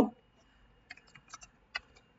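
Computer keyboard typing: about five faint, quick key clicks starting about a second in, as a word is typed.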